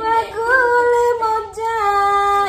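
A high female voice singing unaccompanied, holding long notes that slide gently between pitches, with a brief break about one and a half seconds in.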